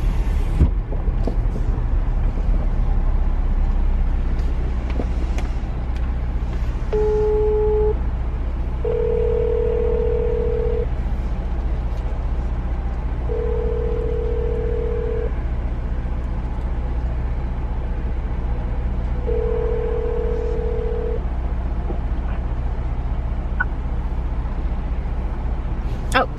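An outgoing phone call ringing unanswered inside a car: a short beep, then the ringback tone sounds three times, each ring about two seconds long. Under it runs the steady low hum of the car cabin.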